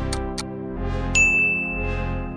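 Two countdown ticks over soft background music. About a second in comes a bright ding chime that rings on: the sound effect that reveals the poll result.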